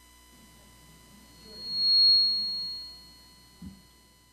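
Microphone feedback through a PA system: a loud, high-pitched whistle on one steady pitch swells up over about a second, peaks, and dies away, followed near the end by a short thump.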